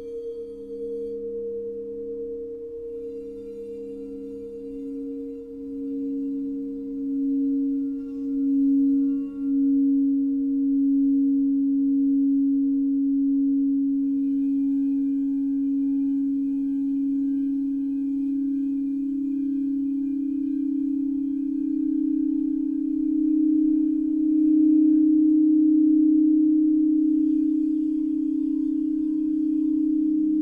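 Alchemy crystal singing bowls tuned to 432 Hz, rubbed around the rim with a mallet so that several steady low tones ring together with a slow pulsing beat. The sound swells about a third of the way in and again near the end.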